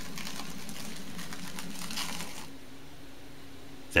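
Thin clear plastic film crinkling as it is pulled down and wrapped around a glass beaker, a dense crackle that stops about two and a half seconds in.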